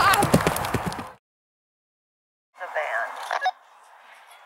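Hoofbeats of a horse galloping on a dirt track, with pitched calls over them, cutting off about a second in. After a gap of silence there is a short pitched sound, then faint open-air ambience.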